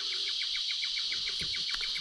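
Steady high-pitched drone of insects, with a rapid run of short, evenly spaced chirps, about ten a second.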